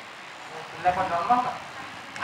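A pause in the speech with steady background room noise, and a faint, distant voice speaking briefly about a second in.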